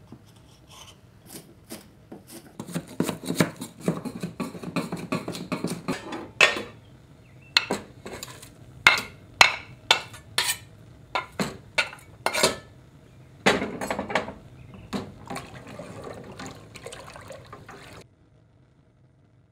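Kitchen utensil sounds: a knife knocking and scraping on a wooden cutting board and against a speckled enamel pot, and a spoon stirring in the pot. Irregular sharp clinks and knocks, thickest a few seconds in and again about three-quarters through.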